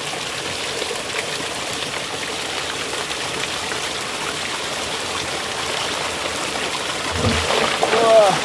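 Water with stinging catfish fry pouring steadily over the rim of a tipped plastic drum into a tank, with a low thump near the end.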